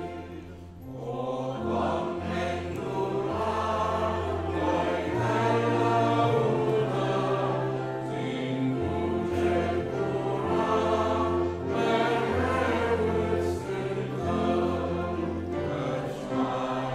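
Congregation singing a hymn together, accompanied by piano.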